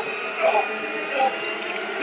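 A steady high tone and sustained music, with two short, faint voice fragments about half a second and just over a second in.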